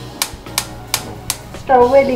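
Gas stove's spark igniter clicking four times, about three clicks a second, as the burner under the biryani pot is lit. A loud voice comes in near the end.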